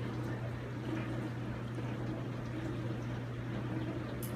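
A steady low hum under faint room noise.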